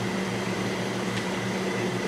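Steady low machine hum with a faint high whine above it, the running of pumps and fans.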